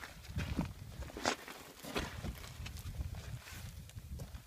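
Irregular footsteps on gravel, a few crunches a second, over a low rumble on the microphone.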